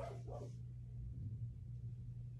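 Quiet room tone dominated by a low steady hum, with the faint tail of a voice fading out in the first half-second.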